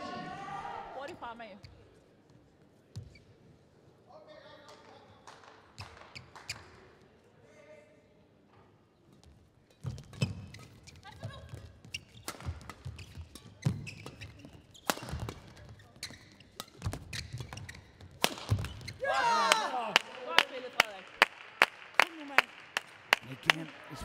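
Badminton rally: irregular sharp racket strikes on the shuttlecock and footfalls on the court over about nine seconds, ending in a shout, followed by a quick run of evenly spaced sharp knocks, about three a second.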